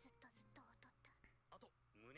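Very faint speech, close to a whisper: Japanese anime dialogue playing at low volume.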